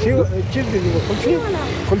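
People talking, over a steady low rumble of a vehicle engine running.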